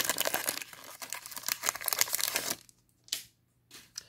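Foil trading-card pack wrapper crinkling and tearing as the pack is opened, dense crackling for about two and a half seconds, then a couple of faint brief rustles.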